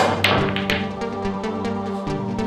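Background music with a steady beat throughout. Over it, a cue tip strikes the cue ball at the very start, and billiard balls click together twice within the first second.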